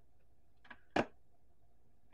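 A faint tick, then one sharp click about a second in: the LED light bar snapping onto its magnetic mounting strip under the cabinet.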